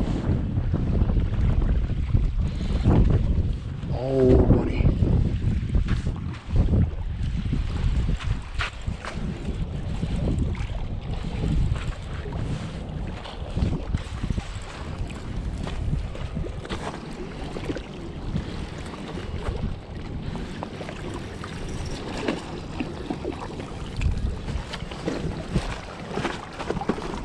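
Wind buffeting the microphone, a loud, uneven rumble, with scattered short knocks and rustles of handling.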